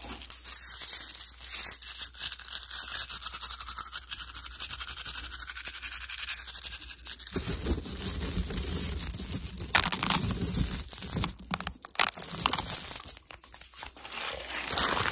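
Fast, close-miked ASMR trigger sounds made by hand: a dense run of quick clicks and rattles, then from about seven seconds in a fuller, lower handling sound with short breaks near ten and twelve seconds.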